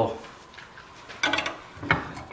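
A bench vise being opened to release a PVC fitting: metal clatter a little past a second in, then two sharp knocks near the end as the steel handle bar slides and strikes.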